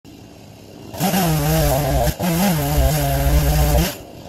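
Gas chainsaw opened up to high revs about a second in and held there, its engine note dipping briefly twice before running steady.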